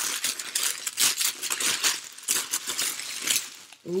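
Packaging crinkling and rustling in many quick, irregular crackles as a small wrapped package is opened by hand.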